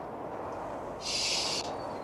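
Old Glasgow Underground train running, a steady noise, with a short loud hiss a second in.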